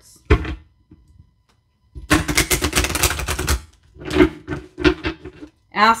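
A deck of oracle cards being shuffled by hand: a sharp tap, a pause, then a rapid run of card clicks for about a second and a half, followed by a few more slaps of the cards.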